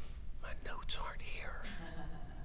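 A person whispering briefly, with a sharp hiss about a second in, over a low steady hum.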